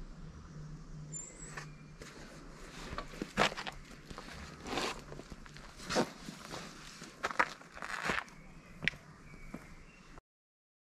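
Footsteps on a dirt and stone trail, irregular and spaced well apart, mixed with the rustle of clothing and a backpack being lifted and put on.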